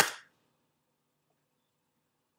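One sharp plastic snap as a Scentsy wax bar's plastic clamshell pack is popped open, dying away within a fraction of a second, then near silence.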